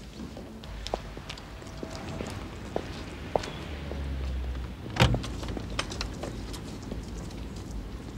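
Footsteps and small clicks on a street, a brief low rumble, then a heavy car door slamming shut about five seconds in, the loudest sound.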